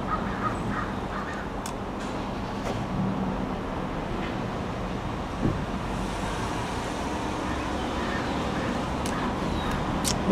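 Steady low background hum and noise, with a few faint clicks.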